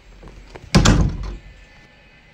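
A heavy door slams shut once, about three quarters of a second in, with a deep, short-lived boom after the hit.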